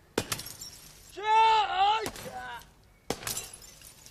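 Karate training: a sharp crack of a strike just after the start, then a loud, pitched kiai shout of about a second that rises and falls, and another sharp crack a little after three seconds.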